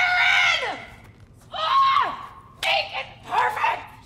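About four loud, high-pitched, wordless cries in a row, each sliding down in pitch at its end; the first and longest fills roughly the first second.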